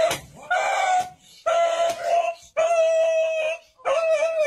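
An animal crying out in distress while it is being struck for slaughter: a series of long, even-pitched cries, about one a second.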